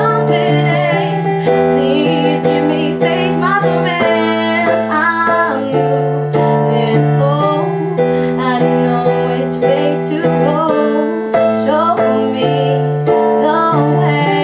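A woman singing a melody with vibrato over held keyboard chords that change every second or two.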